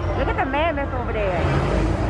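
Restaurant dining-room ambience: people's voices over a steady low rumble.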